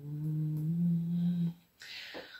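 A woman humming a long, level "mmm" for about a second and a half, its pitch stepping up slightly partway through, followed by a short breath near the end.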